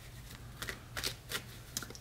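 A deck of tarot cards being shuffled by hand: a quiet run of short, irregular card clicks and flicks.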